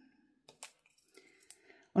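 A few faint, short clicks and taps from small die-cut paper pieces being picked up and pressed into place with a pick-up pen, three or four spread out with quiet between them.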